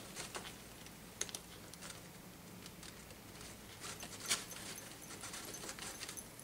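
Faint handling noise: scattered light clicks and rustling as hands work the elastic on a metal-coin hip scarf, with one sharper click a little past the middle.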